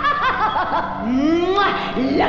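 A woman laughing wildly in short bursts, her voice then rising steadily in pitch about halfway through.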